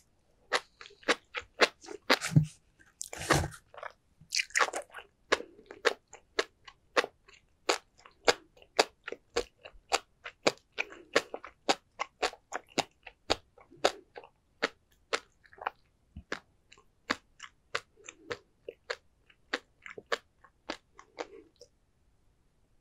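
Close-miked chewing of sea grapes and flying fish roe, the little beads popping between the teeth in a run of sharp clicks, about two to three a second, with a denser burst of crackling a few seconds in.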